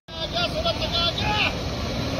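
Heavy truck engines running as loaded trucks move slowly along a road, with people's voices over the noise.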